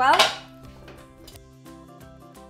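Kitchen knife chopping a carrot on a wooden chopping board: repeated light knocks of the blade striking the board.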